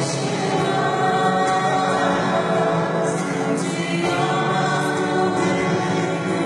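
A choir singing, several voices holding long notes together.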